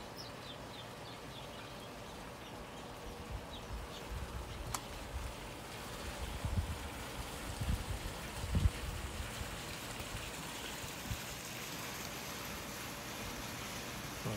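Outdoor backyard ambience: a steady hiss with a few faint bird chirps in the first couple of seconds, a single click about five seconds in, and irregular low rumbles around the middle.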